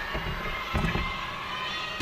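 Dull thumps of a gymnast's vault as she strikes the springboard, the vaulting table and the landing mat, the loudest about three quarters of a second in. Under them runs the steady murmur of a large arena crowd.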